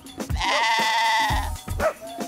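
A lamb bleating once, a long, wavering bleat starting about half a second in, over background music with a steady beat.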